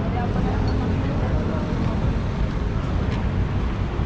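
Outdoor street ambience: a steady low rumble of traffic, with indistinct voices talking in the background.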